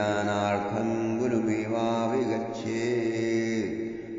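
A man chanting a Sanskrit verse in long, held notes on a fairly steady pitch.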